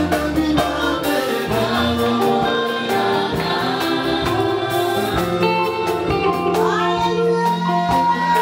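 Live gospel worship music from a church band, with electric guitars, a drum kit and keyboard under a group of singers.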